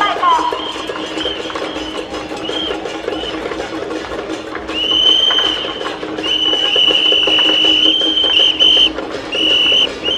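Temple procession music: fast, dense rhythmic percussion over a steady low drone, with a high, steady held tone that comes in long stretches in the second half.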